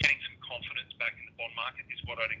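Only speech: a man talking continuously, his voice thin and narrow-sounding as over a phone or web-call line.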